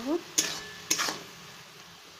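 Spatula scraping and stirring spinach and tomatoes in a metal kadai: two sharp scrapes about half a second apart, over a faint sizzle of the greens frying.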